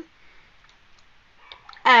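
A quiet pause with a few faint, short clicks, then a voice starts speaking near the end.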